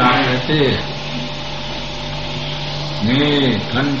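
A man's voice says a word at the start and speaks again near the end. In the pause between, a steady low hum with a faint hiss keeps going: the background noise of the sermon recording.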